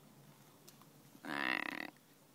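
A crow gives one harsh caw, lasting under a second, a little over a second in.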